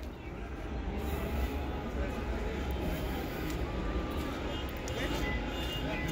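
Steady outdoor din of distant voices and vehicle traffic over a constant low rumble.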